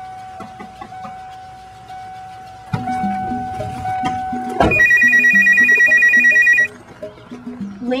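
Telephone ringing with a fast, warbling electronic trill for about two seconds, starting a little past halfway. Background music with a long held note plays under it before the ring.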